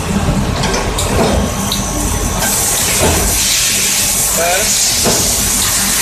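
SPU 20 CNC lathe running with a steady low hum; about two and a half seconds in, a loud, even spraying hiss starts inside the machine and holds steady.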